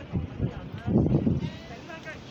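A person's voice in short bursts, loudest about a second in, with no words that can be made out.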